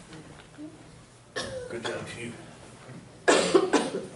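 A person coughing: a quick run of about three loud coughs near the end, after a brief stretch of indistinct talk.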